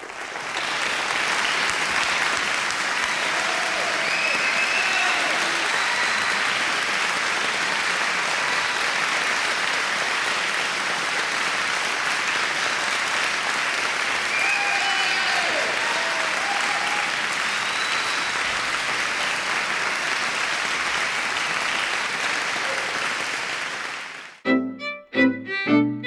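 Audience applauding, swelling up within the first second and then holding steady, with a few whoops and cheers rising above it around four and fifteen seconds in.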